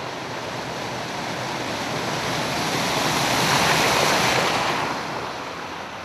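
A car driving through deep floodwater on a street, the rush and splash of water thrown up by its wheels growing louder as it comes close, loudest about four seconds in, then fading as it passes.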